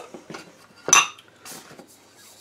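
Empty cosmetic containers clattering and clinking together as they are handled and set down: a few light knocks and one sharp, ringing clink about a second in.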